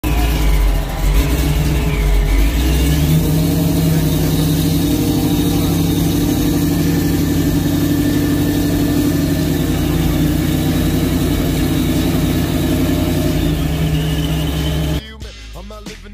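Chevrolet Camaro Z28's V8 engine running loud and steady through its exhaust, cutting off abruptly about a second before the end as hip-hop music comes in.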